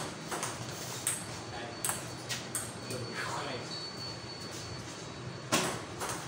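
Table tennis doubles rally: the ball clicks in quick succession off the paddles and the table, with a louder hit near the end.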